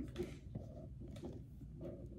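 Faint handling of a cardboard product box: a few light taps and scrapes over quiet room tone.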